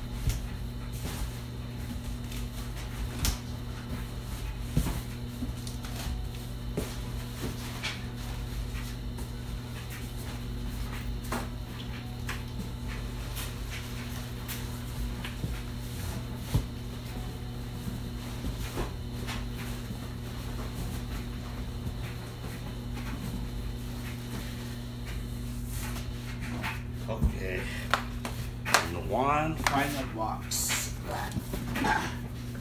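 Supplies being handled and packed into a cardboard box: scattered light knocks, clicks and rustles over a steady low hum.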